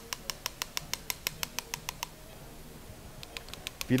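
Rapid, regular clicking from a hand-turned surgical rotating shaver working in the disc space, about six or seven clicks a second. It stops about halfway through, and a few more clicks come near the end.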